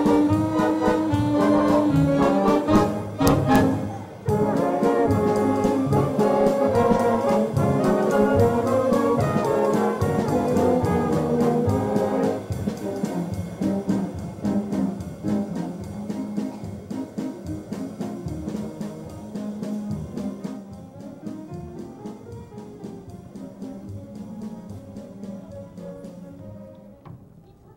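Live pit orchestra playing brass-led music, loud for the first twelve seconds or so with a brief break about four seconds in, then softer and fading away near the end.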